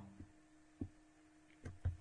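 A pause between speech: faint steady hum with a few short soft clicks, two of them close together near the end.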